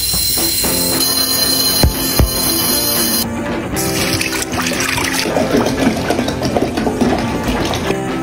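Background music over tiny dry gel ball beads poured into a glass tumbler, a steady hissing patter that stops after about three seconds, followed by water poured in from a bottle.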